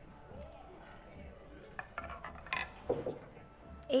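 A spoon clinking and scraping against a bowl: several light, quick clinks in the second half, over faint background music.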